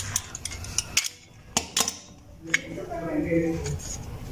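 Sharp metallic clicks and clinks as pliers grip and work a press-fit slotted steel disc off the shaft of a car radiator fan motor. The clicks are separate and uneven, the loudest a pair about a second and a half in.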